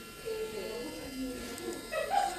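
Electric manicure nail drill (e-file) running with a steady high whine, a small fine bit working at the cuticle.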